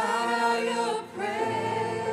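A man and two women singing a worship chorus in harmony into microphones, holding long notes, with a brief break for breath about a second in.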